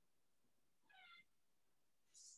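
Near silence, broken about a second in by one faint, short animal call with a clear pitch.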